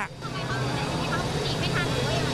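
A vehicle engine runs with a steady low hum under the faint chatter of a crowd.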